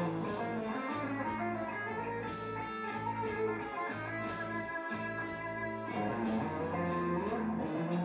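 Electric guitar playing a single-note lick that targets each note of an A major barre chord, landing on each chord tone from a semitone below and a semitone above. The notes ring into one another, with fresh picked attacks about every two seconds.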